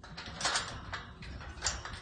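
Light metallic clinking and rattling, with the sharpest clicks about half a second in and again near the end.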